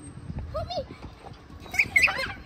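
Young children's voices calling out while climbing on playground equipment, in short wordless cries, with a brief loud high-pitched squeal near the end.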